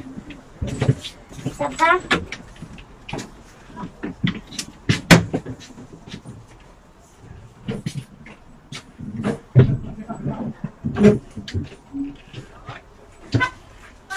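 Scattered sharp clicks and knocks from cupboard doors and fittings being handled inside a motorhome, the loudest about five, nine and eleven seconds in, with voices in the background.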